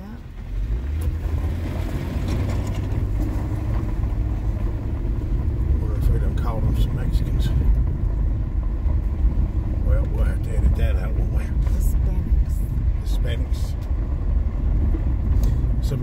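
Car driving on a gravel road, heard from inside the cabin: a steady low engine and tyre rumble that gets louder about half a second in, with scattered small clicks and ticks.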